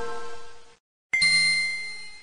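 Bell-like chime notes at the start of a hip-hop track: a ringing chime fades and stops just under a second in, then after a brief silence a second, brighter chime strikes and fades.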